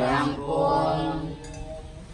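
Novice Buddhist monks chanting together, one long held chanted note that trails off about a second and a half in.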